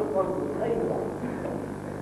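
Men talking in the first second and a half, then fading, over a steady low hum.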